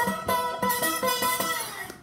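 Resonator guitar played slide-style with a shot glass held against the strings: picked notes ring on together, and the pitch glides down near the end.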